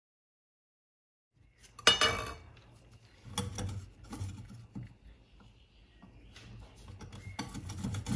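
Ginger being grated on a flat stainless-steel hand grater resting in a glass bowl: intermittent rasping scrapes and metal-on-glass clinks, starting about a second and a half in, the loudest a sharp clink about two seconds in.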